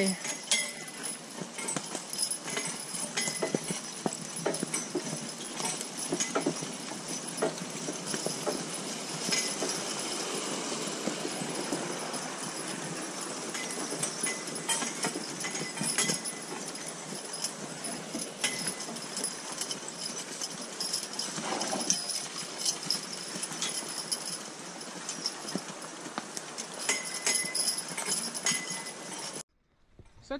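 Hooves of a pair of Percheron draft horses walking on a wet dirt trail, with the metal hardware of their harness clinking along with the steps. The sound cuts off just before the end.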